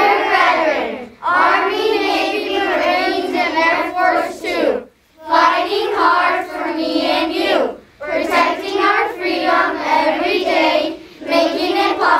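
A class of young children singing together unaccompanied, in phrases broken by short pauses for breath about a second, five, eight and eleven seconds in.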